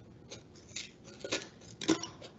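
Scissors cutting into a stiff paperboard chip can: about four separate snips roughly half a second apart, the last one the loudest.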